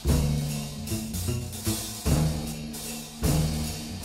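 Instrumental break in a recorded Christmas song with no singing: the band holds low bass notes, struck with heavy drum accents three times, at the start, about two seconds in and near the end.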